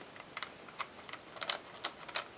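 Plastic toys on a baby's bouncer being fiddled with by hand, giving a run of small, irregular clicks and clacks, about eight in two seconds.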